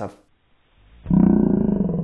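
A man's voice drawn out into one long, deep, gravelly call, starting about a second in: a mock-roared 'five' for the five-millimetre difference.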